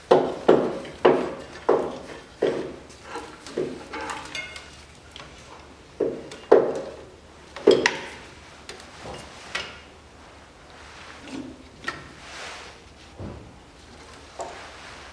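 Repeated metallic knocks and clunks from work on the stripped-out bulkhead of a Land Rover Series III. They come about two a second for the first few seconds, then at uneven intervals, growing fainter near the end.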